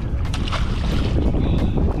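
Wind buffeting the microphone on an open fishing boat, a loud steady low rumble.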